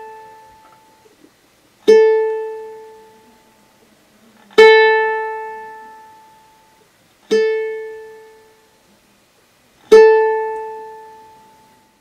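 Ukulele's A string, in standard GCEA tuning, plucked on its own four times about every two and a half seconds. Each note rings out and fades before the next, a reference pitch for tuning.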